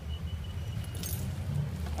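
Low steady background rumble, with a brief crinkle of a plastic blister pack being handled about a second in.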